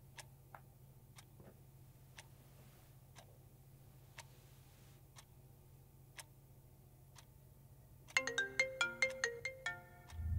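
A clock ticking about once a second in a quiet room; about eight seconds in, a smartphone on the nightstand starts playing a bright marimba-like ringtone, much louder than the ticking.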